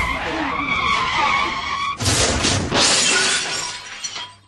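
Comic tyre-screech and crash sound effect: a wavering squeal for about two seconds, then a sudden loud crash of breaking glass that fades away.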